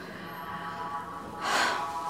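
A single audible breath about one and a half seconds in, short and airy, from a person pausing between lines, over a faint sustained background music bed.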